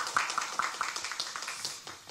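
Brief applause, a scatter of hand claps that thins out and fades away over about two seconds.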